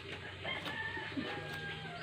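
Birds calling in the background: a few short high chirps in the first second, then a longer held call in the second half.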